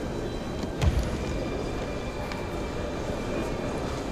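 Steady background noise of a large indoor sports hall, with a single dull low thump about a second in.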